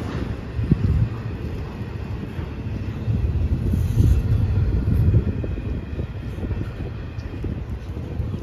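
Double-stack intermodal freight train's well cars rolling past: a steady low rumble of steel wheels on the rails, with a few short knocks.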